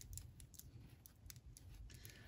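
Near silence with scattered faint plastic clicks from a small action figure being handled, its arms raised at the shoulder joints.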